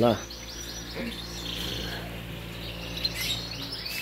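Many caged canaries chirping and twittering over a low steady hum.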